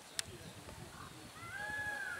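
A sharp knock about a quarter second in, then near the end a long high-pitched call that rises and then holds.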